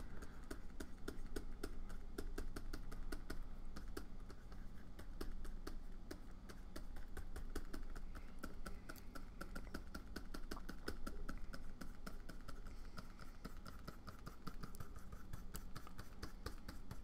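Stylus tapping and stroking on a Wacom Cintiq pen display: a quick run of light clicks and taps, several a second, over a steady low hum.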